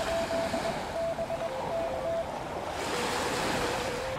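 Steady surf and wind noise from the beach, with faint Morse code (CW) tones keyed on and off from a radio: a higher note in dots and dashes for the first two seconds, then a lower note in longer dashes near the end.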